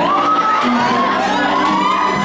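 A crowd of young people cheering and shouting over a pop backing track, with high overlapping shouts rising and falling one after another.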